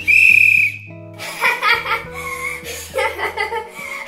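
One short blast on a hand-held whistle: a single steady, shrill tone lasting under a second.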